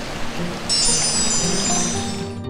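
A bright, shimmering chime sound effect comes in under a second in and holds to the end, over a steady wash of flowing hot-spring water.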